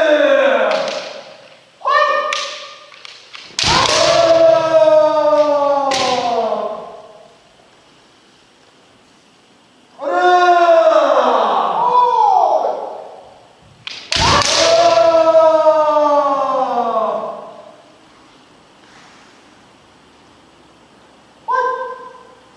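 Kendo kiai: long shouts that fall in pitch. Two sharp cracks of a bamboo shinai striking armour, about three and a half and fourteen seconds in, are each followed by a long strike shout, in drills on dō (torso) strikes.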